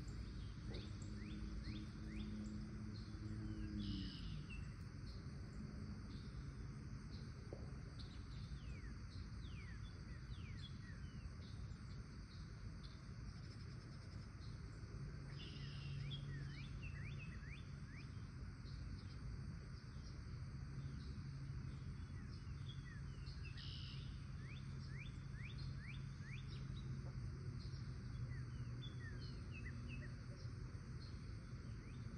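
Small birds chirping over and over in short quick chirps, over a steady low outdoor rumble. A faint low hum slides down and fades about four seconds in, and another steady low hum comes in about halfway through.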